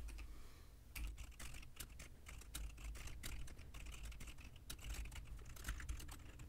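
Computer keyboard being typed on: a quick, irregular run of light keystrokes, starting about a second in.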